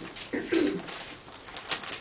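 A man's short, low throat-clearing sounds about half a second in, then a light click near the end.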